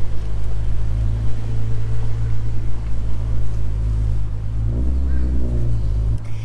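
A vehicle engine running at idle, a steady low hum, with an engine note that rises and falls briefly near the end.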